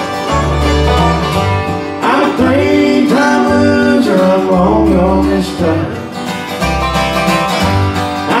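Live bluegrass band playing: fiddle, acoustic guitar, five-string banjo and upright bass, with separate plucked bass notes under the lead line.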